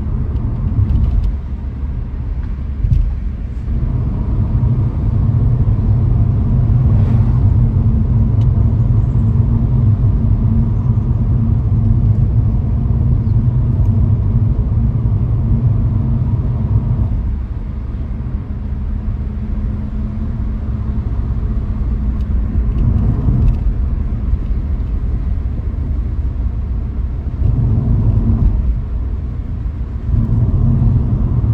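A car driving along a road: a steady low rumble of engine and tyres, which eases off for a stretch after the middle and picks up again near the end.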